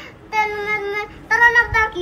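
A young boy singing in a high voice, two short held phrases.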